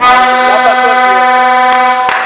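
A horn blown in one long, steady, unwavering note lasting about two seconds, starting and stopping abruptly, with shouting voices underneath.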